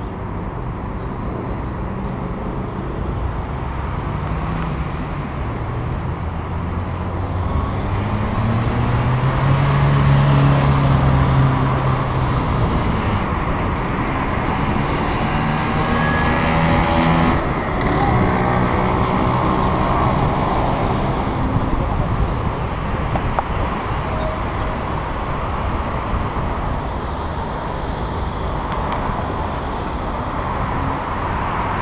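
City road traffic heard from a moving bicycle: a steady rush of road noise. Motor vehicles pass in the lanes alongside, with engine sound swelling twice, loudest about a third of the way in and again a little past halfway.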